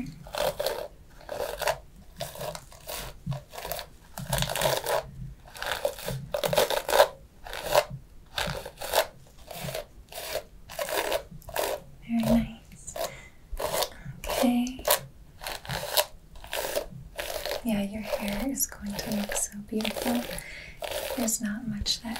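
Hairbrush strokes through hair right at the microphone, a steady run of scratchy sweeps about two a second.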